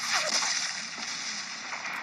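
Water splashing and spraying down after an explosion in the sea, a steady noisy wash that fades a little over the two seconds.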